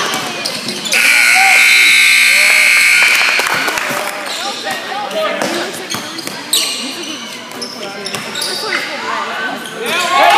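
Gym scoreboard buzzer sounding one steady tone for about two seconds, starting about a second in as the game clock runs out at the end of the quarter.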